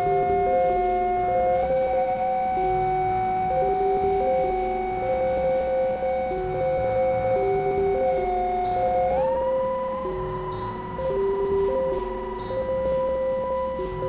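Live electronic music from an Elektron Digitakt and a synthesizer. A held synth drone steps up slightly about two seconds in and glides up in pitch about nine seconds in, over a looping two-note pattern and steady ticking hi-hats.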